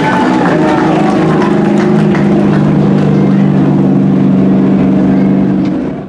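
Super Stock dirt-track race car's V8 engine running at a steady, even pitch as the car drives by, dropping away abruptly at the very end.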